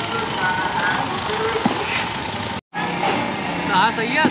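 Busy street ambience: background chatter of many people and traffic. A little past halfway the sound drops out for a moment at an edit cut, then resumes with voices calling and a few sharp knocks.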